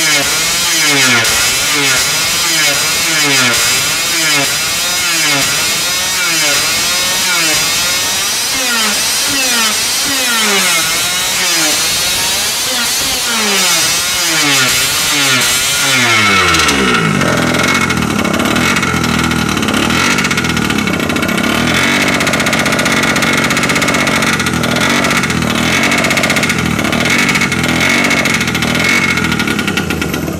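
Peugeot 103 two-stroke moped engine on a dyno, being spun over with its pitch hunting up and down about once a second as it fails to run cleanly, then catching about 16 seconds in and running at a steady speed. The engine will only start when the leak through the exhaust pipe's wastegate hole is carefully adjusted, because pressure pulses in the pipe interfere at low rpm.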